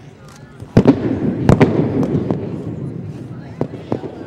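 Two loud, sharp cracks of a wooden wushu staff (gun) slammed down on the competition floor as the athlete lands from a leap, the first about three quarters of a second in and the second about half a second later. Both echo around a large arena, and two fainter strikes follow near the end.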